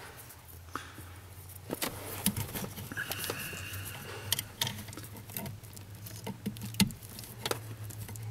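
Irregular small clicks and scrapes of a metal retaining clip being worked by hand onto the brake light switch linkage under a dashboard, over a steady low hum.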